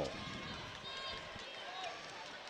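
Faint basketball-gym ambience between plays: a low crowd murmur, with players running up the hardwood court.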